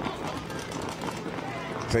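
Faint, indistinct voices over general outdoor background noise, with no single clear event.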